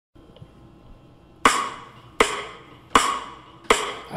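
Four sharp percussive hits, evenly spaced about three-quarters of a second apart, each ringing briefly, over a faint hiss: a count-in, with the song coming in on the next beat.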